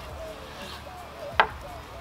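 Knife slicing through a cooked flank steak on a wooden cutting board, with one sharp knock of the knife against the board about one and a half seconds in.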